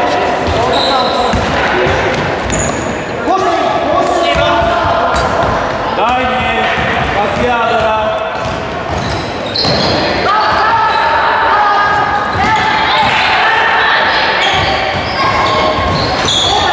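A basketball being dribbled and bouncing on a wooden gym floor during play, with voices of players and spectators, echoing in a large sports hall.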